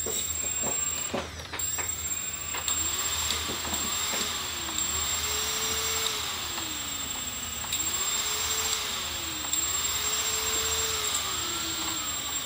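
Small brushless quadcopter motors with no propellers fitted, armed on the bench and spinning, their whine rising and falling in pitch as the throttle is moved. The whine begins about three seconds in, after a few light clicks.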